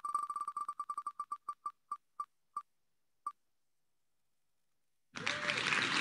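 Ticks of an online name-picker wheel spinning and coming to a stop: quick beeping clicks that slow down and spread out over about three seconds, then silence for about two seconds. Near the end a louder, noisy sound starts.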